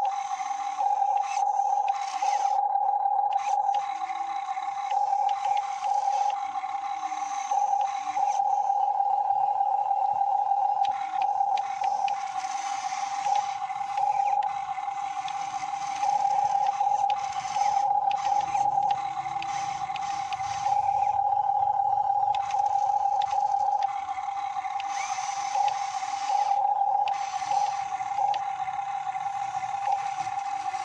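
RC model Hitachi 135US excavator running: a steady high-pitched motor-and-pump whine, growing louder and rougher in surges every second or two as the boom and bucket are worked.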